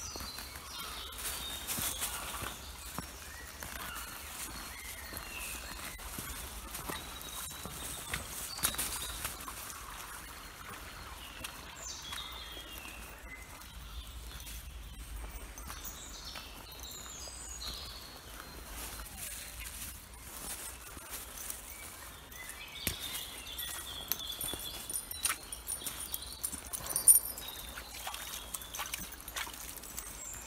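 Footsteps on a muddy woodland path, with birds singing now and then and a few sharper knocks near the end.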